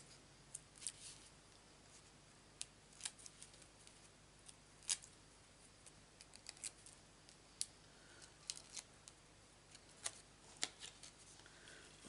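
Faint, scattered small clicks and crinkles of fingers handling a small piece of patterned cardstock, about fifteen in all at irregular intervals, over near silence.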